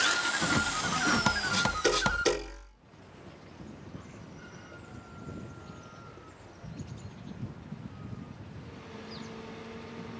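A short electronic title jingle with falling sweeps, cutting off about three seconds in, then faint outdoor background. Near the end a steady low hum begins: a backhoe loader's diesel engine idling.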